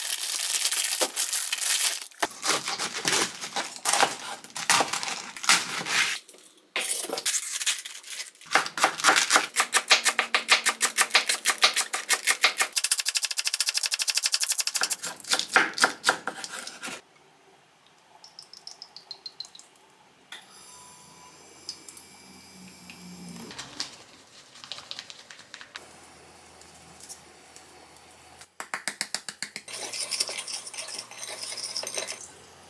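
A ceramic kitchen knife shredding cabbage on a wooden cutting board: fast runs of sharp chopping taps, many to the second. About halfway through the chopping stops, leaving only faint scattered clicks and a brief run of clicks near the end.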